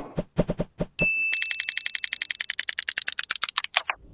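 Animated logo intro sound effect. A run of quick typewriter-like clicks plays as the letters appear, then a short ding about a second in. A rapid, even ticking of about ten a second follows, growing duller and cutting off just before the end.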